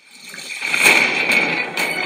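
Film trailer sound effect played back through a device's speakers: a rushing noise that swells up over about the first second and then holds.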